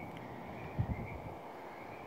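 Quiet outdoor background noise with a faint, steady high-pitched tone, and one short low thump just under a second in.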